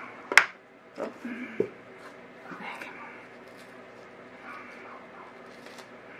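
Handling noise on a wooden work board: a sharp click about a third of a second in, then two softer knocks about a second and a second and a half in. Faint voices murmur in the background.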